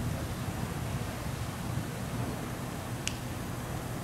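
Steady low background hum and hiss, with a single faint click about three seconds in.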